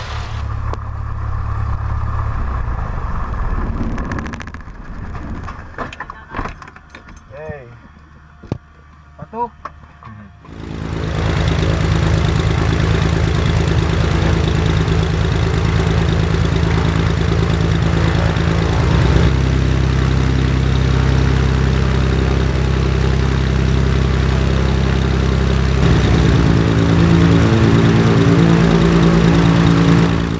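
A Cessna 210L's six-cylinder piston engine and propeller come in suddenly about a third of the way in and run loud and steady on an engine run-up, stepping in pitch as the RPM is changed. Before that there is a quieter stretch with a few short chirps.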